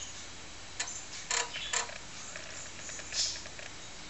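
TRS-80 Color Computer floppy disk drive clicking while loading Coco Max II: three sharp, irregular clicks in the first two seconds, then a softer scrape near the end, over a faint steady hum.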